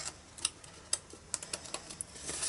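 Large scissors trimming cardstock: a series of sharp, separate clicks and snips as the blades close.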